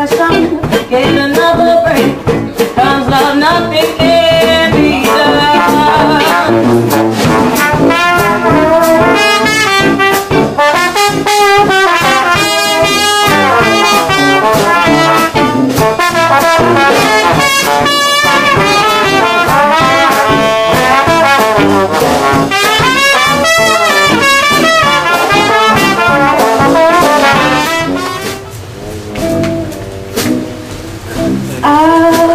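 Traditional jazz band playing live, with trumpet and trombone carrying the lead together over the band. The music drops quieter near the end.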